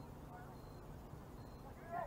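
Faint shouts from players calling across the field over a steady low outdoor rumble. A louder call starts right at the end.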